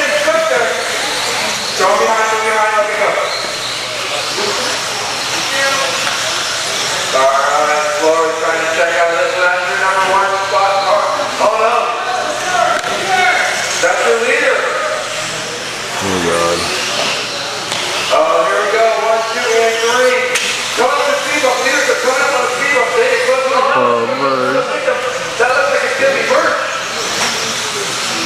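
Race commentary speech that the recogniser did not catch, over a steady hiss from electric RC buggies running on an indoor dirt track.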